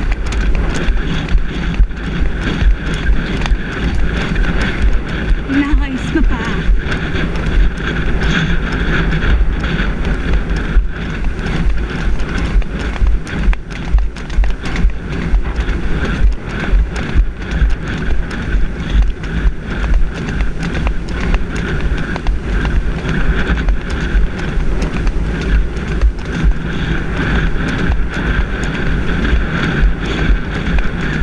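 A pony's hooves beating a regular rhythm on a dirt track, heard from the saddle, with a steady low rumble on the microphone.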